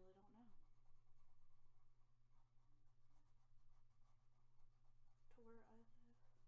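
Faint scratching of a colored pencil shading on a coloring-book page, over a steady low hum. A person's voice sounds briefly at the start and again near the end.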